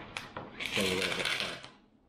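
A spoon clicking and scraping inside a foil freeze-dried meal pouch, then a louder crinkling scrape of about a second as a spoonful is scooped out.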